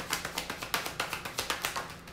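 Deck of tarot cards being shuffled overhand between the hands: a quick, irregular run of crisp card clicks and slaps, about seven a second.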